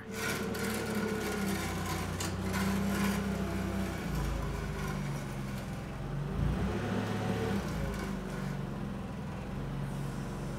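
Forklift engine running as it carries a strapped pack of lumber, a steady low hum that wavers in speed partway through.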